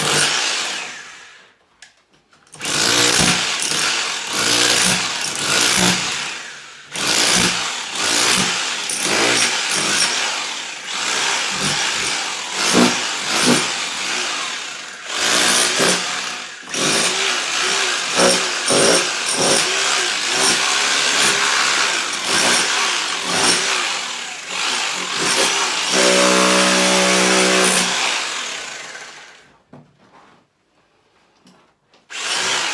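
Handheld electric power tool working in stop-start bursts against the foot of a brick wall, hacking off the old plaster. Near the end it runs briefly off the wall with a steady motor hum, then stops.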